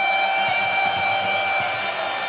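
A single held electric guitar tone rings out through the amplifiers as the song ends, thinning away about three-quarters of the way through, over an arena crowd cheering.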